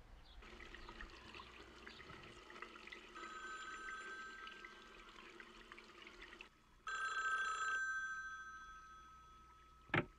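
Telephone bell ringing: a long ring, a short break, then a second, louder ring about seven seconds in that fades out slowly, ended by a sharp click as the phone is picked up.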